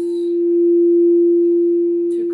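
Crystal singing bowl ringing with a single sustained, steady tone that swells gently and eases off again.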